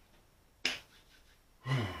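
A single sharp click about two-thirds of a second in, then a man's sigh, falling in pitch, near the end.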